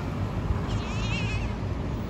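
Steady rumble of road traffic as cars drive past, with a brief high, wavering cry about a second in.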